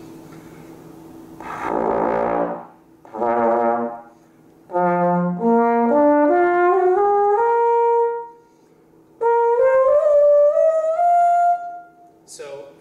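Trombone played in first position, climbing the natural harmonic series: two short low notes, then a run of notes stepping upward partial by partial. After a brief pause a second run climbs higher and ends on a held top note.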